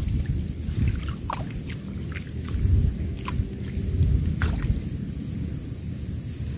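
Pond water sloshing and dripping as hands work through a netting fish trap held in the water. There are scattered small splashes and drips over a low, uneven rumble.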